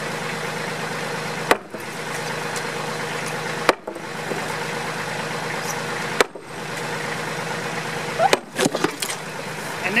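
Four sharp hammer blows, about two seconds apart, on a lifted slab of unreinforced concrete driveway, which breaks apart under these light blows. A backhoe's diesel engine idles steadily underneath.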